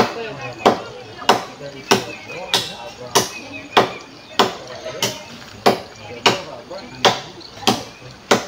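A hand tool striking over and over in a steady, even rhythm, about three blows every two seconds, as in building work on a house frame.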